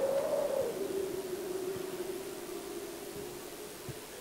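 A single steady tone that wavers slightly in pitch and slowly fades, over a faint hiss.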